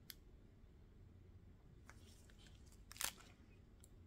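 Near silence with a few faint crinkles and ticks from a thin plastic piping bag of resin being squeezed in a gloved hand; the loudest crinkle comes about three seconds in.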